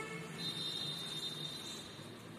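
A faint, steady, high-pitched tone that starts about half a second in, over low room noise.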